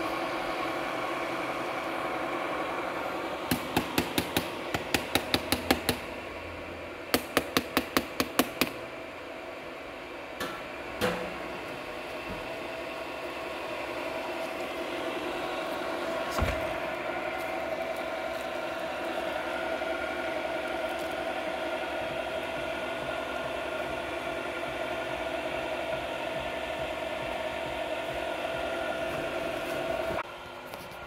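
Electric pump of a honey filtering setup running with a steady hum. A few seconds in, two rapid runs of sharp knocks come over it, about ten and then about seven.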